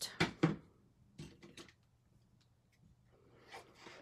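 Light handling noises of cardstock on a craft table: two sharp clicks in the first half second, a few softer ticks a little after a second, then mostly quiet.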